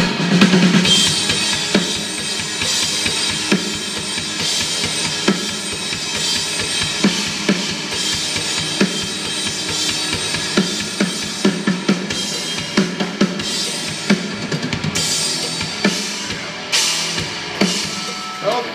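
Rock drum kit played hard, kick and snare hitting on a steady beat under continuous cymbal wash.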